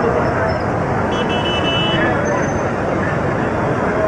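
Dense, steady babble of a large street crowd, many voices talking at once, mixed with traffic noise. A brief high-pitched tone sounds about a second in and lasts about a second.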